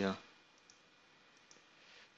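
A couple of faint computer mouse clicks, one a little under a second in and one about a second and a half in, as a trading chart is zoomed out.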